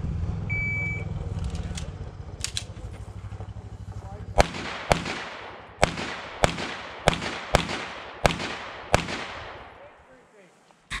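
An electronic shot timer beeps once, a short high tone, about half a second in. About four seconds later a pistol fires eight shots over roughly four and a half seconds, at an uneven pace, each shot ringing off with a short echo.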